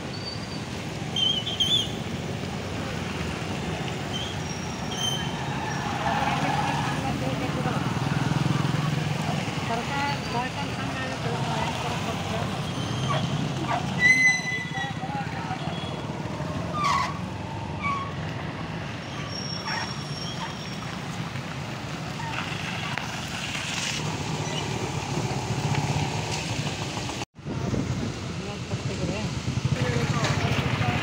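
Street traffic with motorcycles and cars passing and people's voices in the background. A short high beep, the loudest sound, comes about halfway through.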